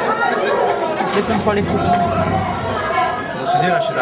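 Several boys' voices talking over each other in a continuous, unintelligible chatter.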